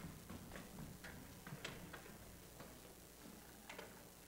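Faint, irregular clicks and knocks of footsteps and percussion gear being shifted on a stage, about two a second with no steady rhythm, over quiet hall noise.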